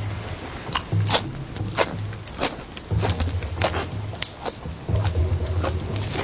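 Someone chewing a quid of Salvia divinorum leaves: wet mouth clicks and smacks roughly every half second to second, with a low hum coming and going underneath.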